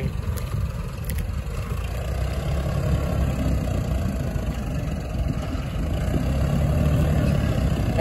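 VST Zetor 5011 tractor's diesel engine running steadily under load while pulling a tine cultivator through dry soil.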